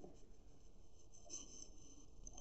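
Faint scratching of a pen writing on exercise-book paper, in short intermittent strokes.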